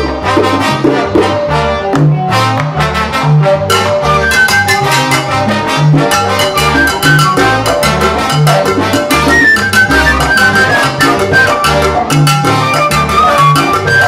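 Salsa band playing an instrumental passage: brass carrying the melody over a rhythmic bass line and dense percussion.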